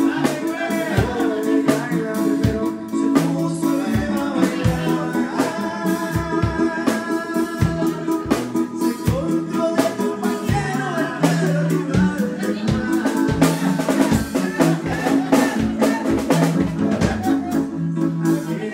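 Band music with a drum kit keeping a steady beat under held bass notes and a melody line, with singing.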